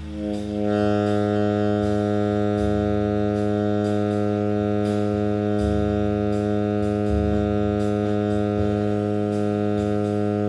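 Tenor saxophone holding one low long tone, steady in pitch and level, starting at the beginning and sustained throughout. Under it a bass-and-drums play-along track keeps time with walking bass notes and light cymbal strokes.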